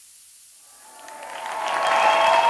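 A hiss that swells steadily louder from about half a second in, with faint held tones inside it.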